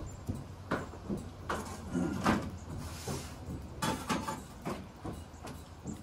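A series of short knocks and scrapes, about half a dozen spread over a few seconds, with a brief hiss near the middle, over a steady low rumble.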